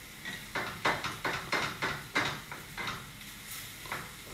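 Wooden spatula scraping and knocking against a stainless steel skillet as crumbled tofu is stirred, a quick run of strokes several a second that thins out near the end.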